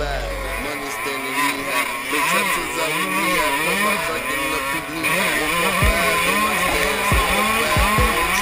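2003 Suzuki RM125 two-stroke dirt bike engine at full race pace, its pitch rising and falling over and over as the throttle opens and closes. Wind rushes over the helmet camera, and a few low thumps come near the end.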